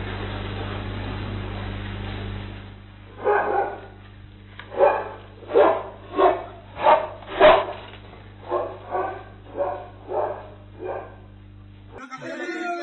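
A dog barking repeatedly, about a dozen sharp barks roughly half a second apart, after a few seconds of steady hiss and low hum.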